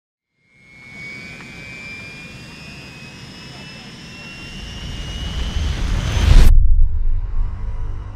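A cinematic sound-design riser: thin rising tones over a building rumble swell steadily louder, then the high part cuts off abruptly about six and a half seconds in, leaving a low, steady drone.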